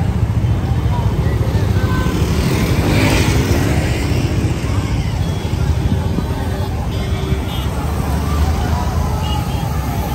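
Motorcycles and road traffic running amid a crowd of people talking, with a heavy low rumble throughout. A vehicle swells past about three seconds in.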